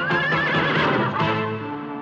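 Cartoon winged unicorn whinnying once, a wavering high call lasting about a second, over background music. The music carries on as held chords once the whinny fades.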